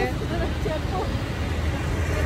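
Steady low rumble of road traffic, with faint voices talking.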